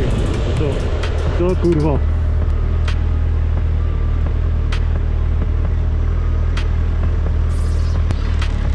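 Suzuki Hayabusa's inline-four engine running steadily at low revs as the bike rolls slowly, heard from a helmet-mounted microphone.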